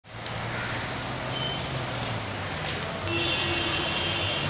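Road traffic noise: a steady hum of vehicle engines under a general street din, joined about three seconds in by a high, steady tone.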